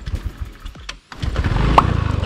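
Honda automatic scooter being kick-started on a weak battery: the engine turns over in rapid strokes, there is a brief pause about a second in, then it catches and runs.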